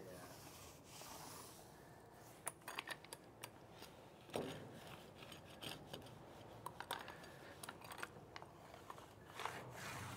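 Faint sticky rubbing of a paint roller spreading a puddle of wet primer across the steel floor of a dump trailer bed, with scattered small clicks from the roller.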